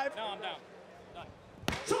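An auctioneer's gavel coming down as the lot is sold: one sharp knock about one and a half seconds in, with a lighter knock just after, following the last words of the bid call.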